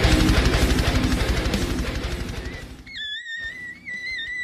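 Metalcore intro song with distorted electric guitar and a fast, even kick-drum pulse, fading out over the second half. Near the end a high, wavering tone begins.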